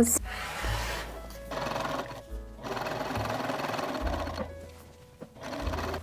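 Background music playing over a sewing machine stitching a quarter-inch hem on cotton fabric.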